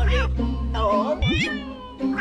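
A house cat meowing, with one long falling meow in the second half, over background music that opens with a low boom.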